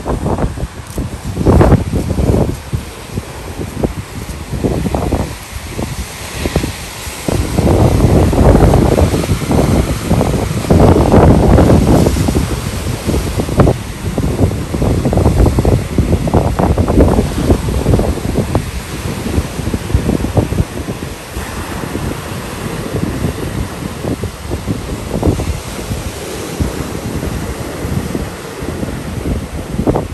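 Wind buffeting the microphone in irregular gusts, strongest in the middle, over surf breaking on a beach.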